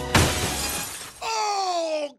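A sudden loud crash that dies away over about a second, then, from a little past halfway, a person crying out in a high wail that falls in pitch, as in pain.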